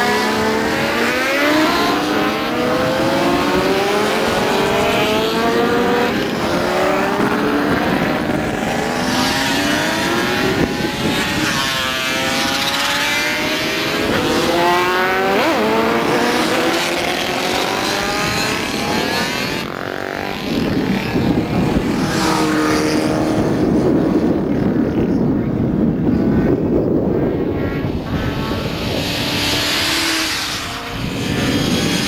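A pack of racing motorcycles accelerating away together, many engines revving at once. Their overlapping pitches climb again and again as the bikes shift up, and later settle into a steadier engine note.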